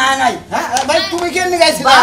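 People's voices in loud, animated dialogue, with pitch rising and falling and a brief pause about half a second in.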